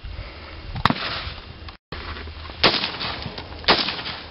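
Colt AR-15 rifle in .223 firing three single semi-automatic shots, each a sharp crack with a short echo. The first comes about a second in and the last two, louder, near the end.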